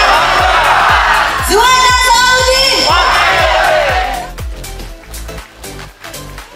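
A rally crowd chanting a campaign cheer (yel-yel) in long held calls, twice, over loud dance music with a steady kick-drum beat, with crowd noise between the calls. About four seconds in, the chanting stops and only quieter music remains.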